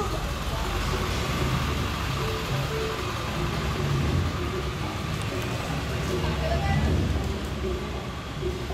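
Busy downtown street ambience: car traffic rumbling past and the voices of passers-by, with music playing in the background.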